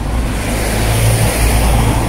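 Road traffic passing close by: engine rumble and tyre noise of a van and cars driving past, swelling to a peak about midway and easing off.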